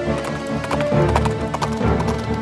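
Horse hooves clip-clopping in quick, irregular clicks over background music.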